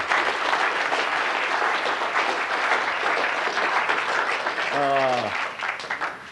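Audience applauding, dying away near the end, with one voice heard briefly over it just before it fades.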